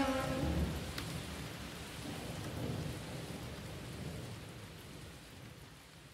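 Rain ambience with low thunder rumbles, a sound-effect layer of the beat left after the piano and drums stop in the first half second. It fades out steadily.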